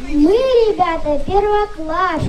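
A young girl's voice through a microphone and PA, reciting verse in a sing-song lilt with drawn-out, gliding syllables.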